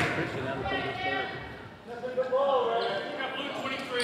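Indistinct voices echoing in a school gymnasium, with a basketball bouncing on the hardwood floor.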